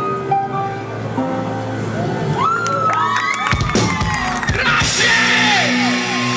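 Live band music amplified in a small club, held notes ringing on, with the audience whooping and yelling over it from about two seconds in and a loud cheer near the end.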